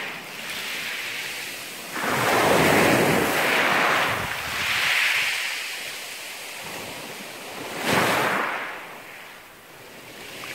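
Small waves breaking and washing up over a pebble beach. Two louder surges, about two seconds in and near the eighth second, with a fainter hiss between them.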